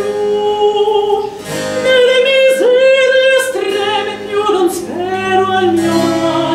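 A woman singing a baroque vocal piece with vibrato, accompanied by cello and harpsichord.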